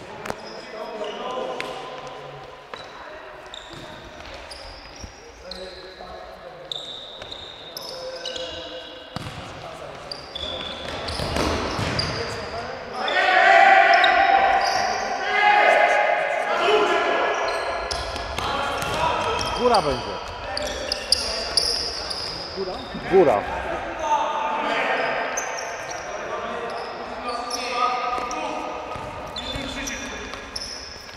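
Futsal ball being kicked and bouncing on a hard sports-hall floor, with players' shouts and calls, all echoing in the large hall; the play gets louder and busier about halfway through.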